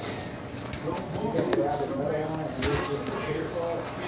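Indistinct voices of people talking, with a couple of short knocks or clicks, one about a second and a half in and another near the three-quarter mark.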